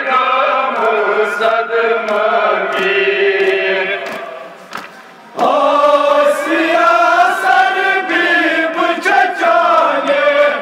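Kashmiri noha: male voices chanting a mournful lament for Muharram, amplified through a horn loudspeaker. The chant fades a little past the middle and then comes back louder. Faint sharp slaps about once a second are the mourners beating their chests (matam) in time.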